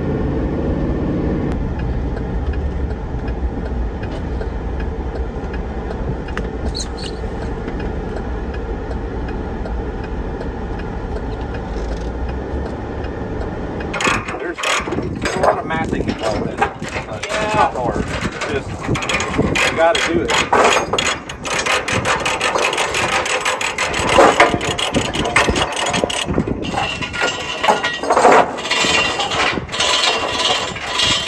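Steady low engine and road noise heard inside the cab of a truck towing a loaded trailer. About halfway through it cuts to metal tie-down chains and load binders clanking and rattling in quick, uneven knocks as they are unhooked from a tractor on a flatbed trailer.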